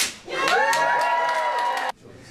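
A sharp snap, then a long held "woo" cheer with a few claps as the ribbon is cut. The cheer cuts off abruptly near the end.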